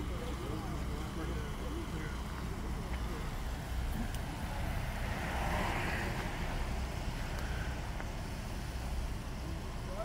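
Steady low rumble of idling vehicles with faint, distant voices. About halfway through, a brief swell of rushing noise.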